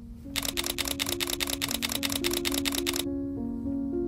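A rapid, even run of sharp clicks, about ten a second for nearly three seconds, over soft music of slow held notes; the clicks stop about three seconds in while the music carries on.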